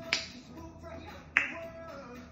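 Two sharp snapping clicks, about a second and a half apart, over faint music from a television.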